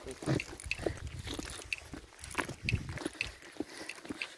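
Footsteps of people walking down a paved asphalt road, short sharp scuffs and taps about two to three a second, with faint voices.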